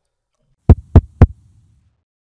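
Three deep, booming thumps about a quarter second apart, starting about two-thirds of a second in: an edited-in sound effect at the logo outro.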